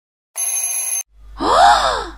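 A sound-effect alarm clock rings for under a second, then a drawn-out vocal groan rises and falls in pitch.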